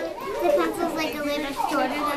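A child's voice talking.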